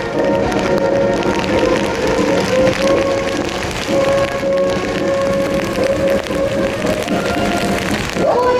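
Military band playing a march, with long held notes, over the hiss of heavy rain.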